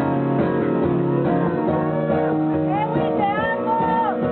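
Acoustic guitar strummed live as a song begins, with singing gliding in over the chords in the second half.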